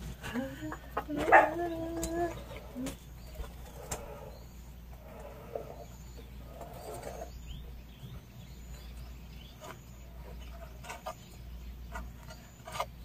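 Sand sprinkled from a plastic spoon onto porous volcanic rock, making light scattered clicks. A short pitched call with held notes sounds about a second in and is the loudest thing, and a few soft low calls follow in the middle.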